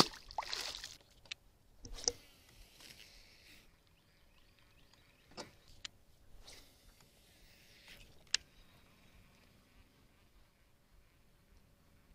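A small bass dropped back into the pond hits the water with a splash at the very start. A second, weaker splash comes about two seconds in, then a few faint, scattered clicks and knocks.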